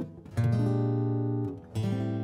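Background music on acoustic guitar: strummed chords, the first held for about a second, then a short dip before the next.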